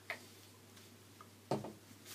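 Two short clicks about a second and a half apart, the second louder, from handling the plastic hair-dye applicator bottle. A faint steady hum lies under them.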